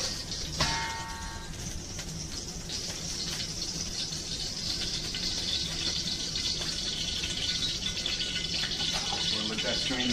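Leftover oil sizzling in a wok on high heat, a steady hiss, with one ringing metal clink about half a second in.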